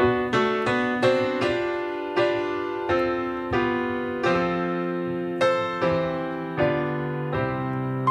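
Solo piano playing a slow instrumental introduction, a new chord struck about every 0.7 seconds, each left to ring on.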